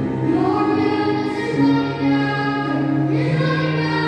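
A girl and a boy singing a worship song together into microphones, their sustained melody lines carried over a steady low musical accompaniment.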